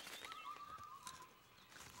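Quiet outdoor ambience with one faint, drawn-out whistled note that falls slightly in pitch over about a second: a distant bird call.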